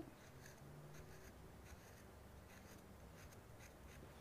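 Faint scratching of a carving tool on a dry clay plate, a run of short sgraffito strokes scraping away the surface.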